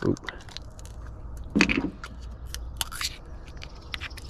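A PowerBait dough jar being opened by hand: the plastic screw lid twisted off, giving a run of small irregular clicks and scrapes.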